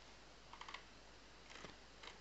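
Near silence with two faint bursts of computer mouse clicks, one about half a second in and one near the end.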